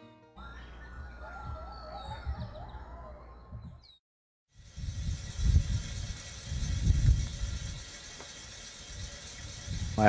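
Wind gusting across the microphone in heavy, uneven low rumbles, starting after a brief cut to silence about four and a half seconds in. Before the cut, a faint low rumble carries a thin, slowly falling tone.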